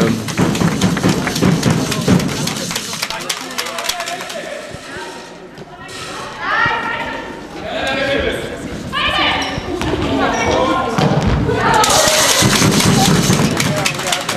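Handball game in a sports hall: the ball thudding and bouncing on the hall floor amid running footsteps, with the hall's echo. Players' voices call out in the middle.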